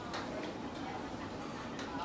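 Steady background hubbub of a busy food stall with faint distant chatter, broken by a few light clicks, one just after the start and one near the end.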